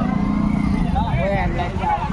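Several voices talking and calling over the steady low rumble of motorcycle and vehicle engines.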